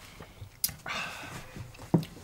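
A short breathy exhale after a sip of gin martini, with a light click before it and a dull knock near the end as the martini glass is set down on the rubber bar mat.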